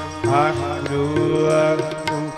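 Sikh kirtan singing: male voices sing a devotional melody over steady held notes, with regular tabla strokes.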